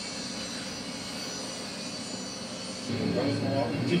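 Television soundtrack playing in the room: a steady engine-like drone, with a voice coming in about three seconds in and the sound growing louder.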